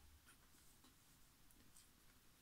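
Near silence: room tone with a faint rustle of paperback pages being handled.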